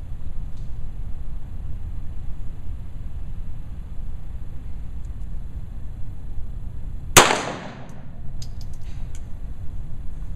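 A single pistol shot about seven seconds in, with a short echo trailing off. A few faint clicks follow, over a steady low background hum.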